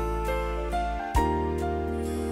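Electronic keyboard playing soft sustained chords over a deep bass note, with a higher melody line on top; a new chord is struck about a second in.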